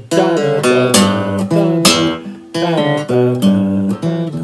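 Steel-string acoustic guitar playing a blues lick in E in standard tuning: a run of single notes and strummed chords on the lower strings, each attack ringing out, at a loose shuffle pace.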